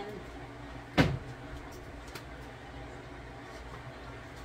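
A single sharp knock of a hard object in the kitchen about a second in, over a low steady hum.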